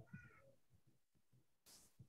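Near silence, with one faint, short pitched sound just after the start.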